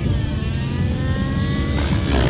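Align T-Rex 700 nitro RC helicopter's O.S. 91 glow engine and rotors running under power in flight, a steady loud engine note whose pitch climbs slowly.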